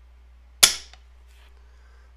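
Mil-spec AR-15 trigger breaking under a trigger pull gauge: the hammer falls on an empty chamber in a dry fire, one sharp metallic snap a little over half a second in.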